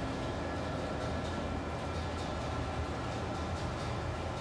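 Steady drone of yarn-mill machinery running: a low hum with a few faint, even whines above it, unchanging throughout.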